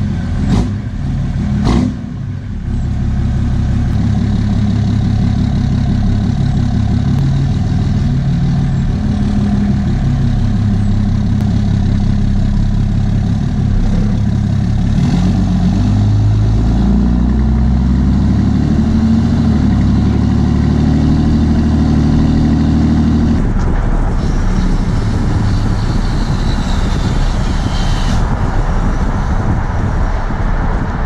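Straight-piped 6.7 Cummins diesel inline-six, heard right beside its 5-inch exhaust tip as the truck pulls away and accelerates, the exhaust note rising and falling with the throttle. A couple of sharp knocks come just after the start. From about 23 s in, wind and road noise from cruising speed join the steady exhaust.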